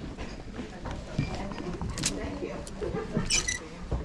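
Faint indistinct chatter of people in a room, with clothes hangers scraping along a metal rack rail twice as hanging clothes are pushed aside.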